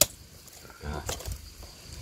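A knife strikes through grilled chicken onto the cardboard tray with one sharp click at the start. It is followed by faint handling sounds of hands pulling the meat apart, with one soft tick about a second in.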